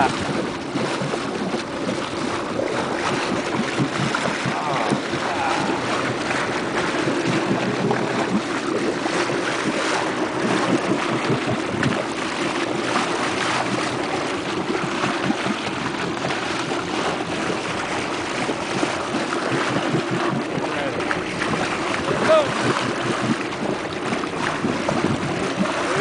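Steady wind on the microphone and water sloshing at a boat's side, with a low steady hum underneath.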